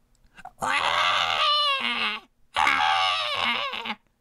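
Two long, loud screams in the manner of a bawling baby, each well over a second long, the pitch wavering in the first.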